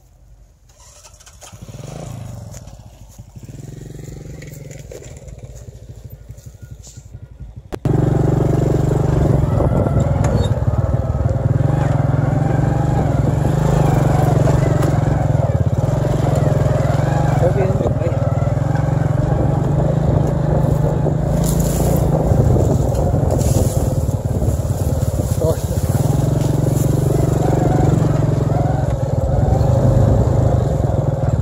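Small motorbike engine: running moderately loud for a few seconds, then abruptly much louder about eight seconds in and running steadily while the bike is ridden along a dirt track.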